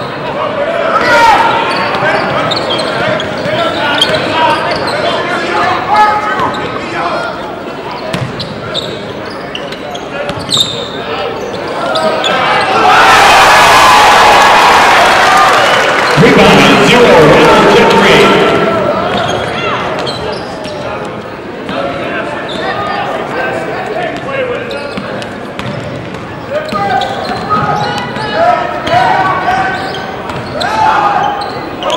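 Game sound of a basketball bouncing on a hardwood gym floor, with voices echoing around the hall. In the middle a loud, even rush of noise swells up for about six seconds, then falls back.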